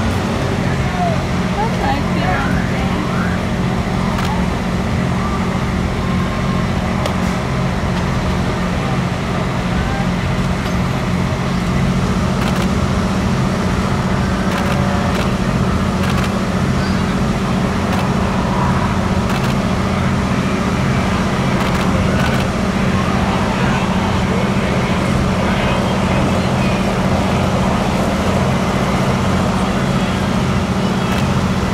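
Steady low drone of a running engine with an even hum, under the faint chatter of people.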